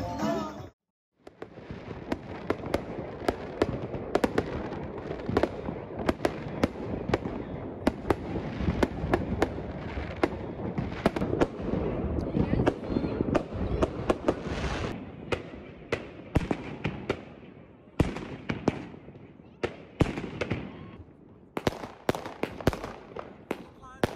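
Fireworks going off: a dense run of crackles and sharp bangs that thins in the last few seconds to fewer, separate reports. Dance music cuts off in the first second before the fireworks begin.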